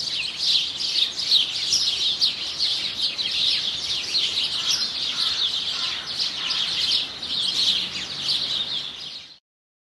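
Songbirds chirping and singing, many short high calls overlapping in a steady chorus that stops shortly before the end.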